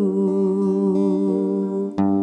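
A man's voice holding one long note over a ringing acoustic guitar chord, with a new strum right at the end.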